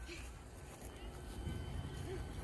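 Wind rumbling on the microphone, uneven and low, with a faint steady high-pitched tone underneath.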